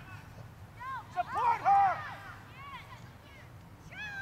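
High-pitched young voices shouting and calling across an open playing field, with a burst of calls loudest about a second and a half in, then quieter. A short knock sounds just before the loudest calls.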